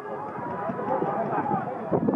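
Several voices shouting and calling over one another across a football pitch as players run with the ball; no single voice is clear.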